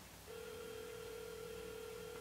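Telephone ringback tone from a phone placing an outgoing call: one steady ring about two seconds long, starting a moment in, heard faintly through the phone. It means the call is ringing at the other end, not yet answered.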